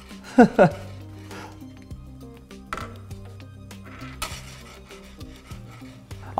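Steel ball rolling and clinking on the steel-wire track of a magnetic 'perpetual motion' desk toy, with a few faint clicks, the ball no longer pushed now that its hidden pulse is switched off. Soft background music runs underneath, and a short laugh comes about half a second in.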